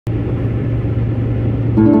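Steady road and engine drone heard inside a moving car, with a low hum underneath; near the end a guitar chord rings out.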